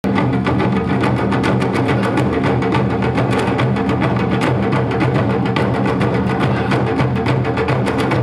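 Japanese taiko ensemble drumming: several players beating large barrel-shaped nagado-daiko and a big drum on a raised stand with wooden sticks, in a fast, dense, unbroken stream of strokes.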